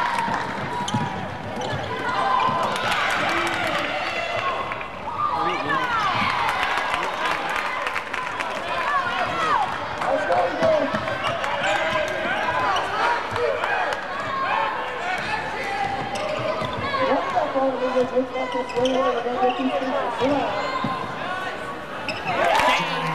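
Basketball game in play in a gym: the ball bouncing on the wooden court, with shouting and chatter from players and spectators throughout.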